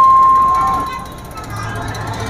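Public-address microphone feedback: a loud, steady whistle at one pitch that fades out about a second in.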